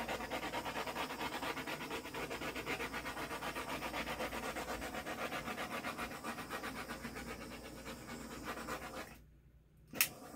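A dog panting hard and fast close by, in an even rhythm of about seven or eight puffs a second. It stops suddenly near the end, followed by one short click.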